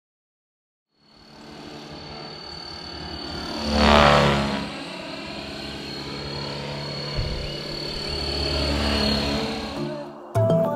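FLY WING Bell 206 electric RC scale helicopter in flight: rotor noise with a steady high-pitched motor whine. The sound cuts in about a second in and swells loudest as the model passes close about four seconds in, then settles to a steady level.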